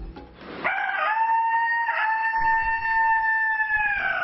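A man imitating a jungle fowl's crow with his voice, hands at his mouth. It is one long, high, steady call that starts under a second in, with a short catch about two seconds in.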